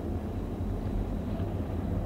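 Steady low hum and hiss in the background of an old cassette recording, with no voice.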